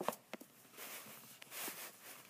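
Hands handling a doll and its packaging inside a cardboard box: a few light clicks and taps near the start, then two soft rustles of paper or plastic.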